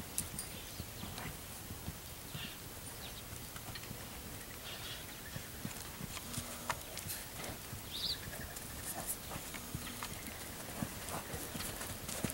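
Faint, irregular hoofbeats of mustangs walking and trotting on the dirt floor of a corral.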